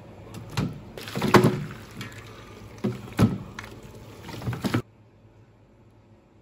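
Braised pork bones and chopsticks knocking and scraping against a metal pressure-cooker pot and a stainless steel tray as the bones are lifted out, in several sharp clatters. The sound stops suddenly near the end.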